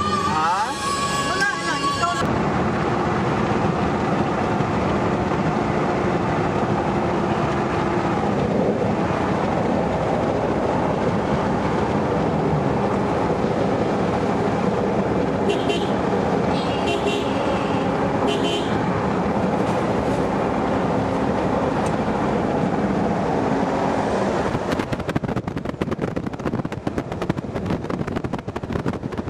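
Steady road and engine noise inside a moving car's cabin, with a few short horn toots around the middle. Near the end, wind buffets the microphone.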